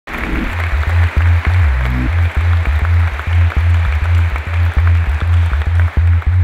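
Intro music with a steady beat and a deep bass line.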